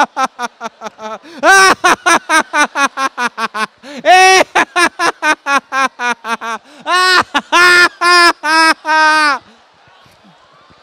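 A man laughing loudly into a handheld microphone in deliberate laughter-yoga laughter: quick runs of ha-ha-ha, about six a second, turning into longer, drawn-out laughs near the end and stopping about half a second before the end.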